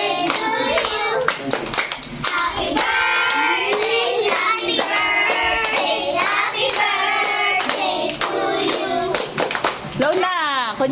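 Hands clapping repeatedly in rhythm along with singing that includes children's voices.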